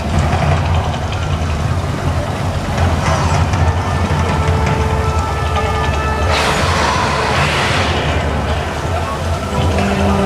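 Mirage volcano show eruption: a deep steady rumble under the show's music, with a loud rushing hiss a little after the middle lasting about two seconds.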